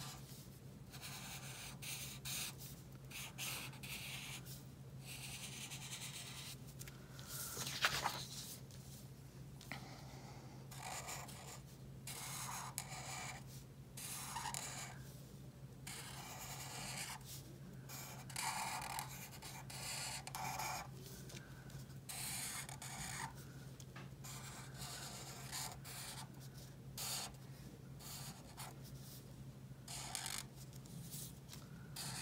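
Black permanent marker (Sharpie) tip rubbing across paper in short strokes with brief pauses between, tracing outlines. There is one sharper, louder sound about eight seconds in, and a steady low hum underneath.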